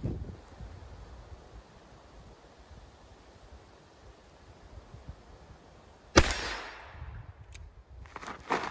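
A single handgun shot about six seconds in, with a tail that dies away over about a second. A faint click follows about a second later. Before the shot there is only low outdoor background.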